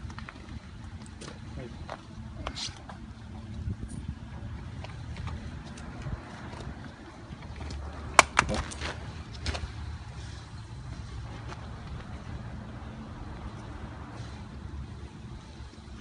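Handling noise close to the microphone while a plastic composite water meter is worked loose from its fitting: clothing rustling and scattered small clicks over a low rumble, with one sharp click about eight seconds in.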